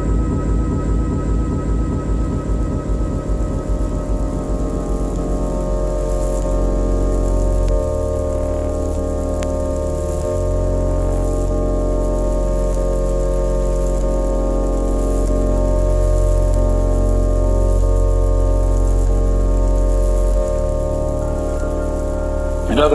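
Ambient electronic music: sustained synthesizer chords over a deep bass drone, with no drums. A pulsing low part fades out over the first few seconds, and the chord shifts about 8, 10 and 20 seconds in.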